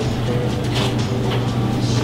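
Faint background music with a few held notes over a steady low hum.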